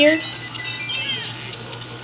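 Lego Mario interactive figure playing faint electronic sound effects from its small built-in speaker as it counts points, with short chirp-like pitch glides about a second in, over a steady low hum.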